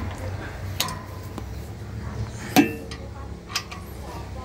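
Metal hand tools clinking against the engine's pulleys and bolts while the timing gear is being turned: several sharp clinks, a few ringing briefly, over a low steady hum.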